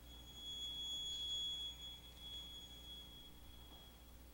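A violin holding a single very high, thin harmonic note, soft, swelling over the first second and a half and then slowly fading away.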